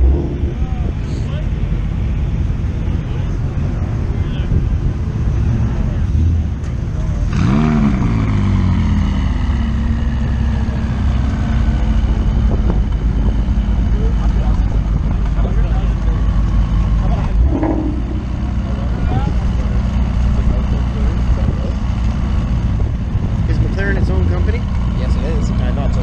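McLaren twin-turbo V8 idling, with one quick rev about seven seconds in that rises sharply and falls back to a steady idle.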